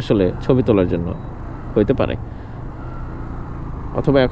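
Motorcycle riding along: a steady low noise of engine and wind on the microphone, with a man speaking briefly in the first half.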